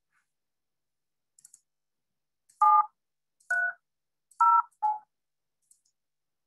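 Four touch-tone phone keypad beeps, each a short pair of tones sounding together, as keys are pressed in quick, slightly uneven succession. Faint ticks come just before them.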